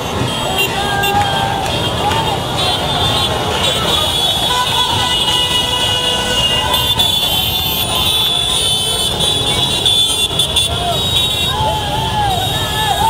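Loud street crowd: people shouting and cheering over a dense bed of motorcycle and scooter engines, with vehicle horns sounding. The shouting grows stronger near the end.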